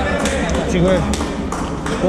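Indistinct talk from several people in a large room, with a few short sharp taps and a steady low hum.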